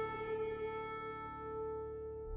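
Soft background music: a sustained chord of held notes slowly dying away.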